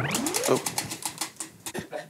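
Spinning prize wheel, its pointer ticking rapidly against the pegs, the ticks spacing out as the wheel slows. A man's short rising "oh" comes near the start.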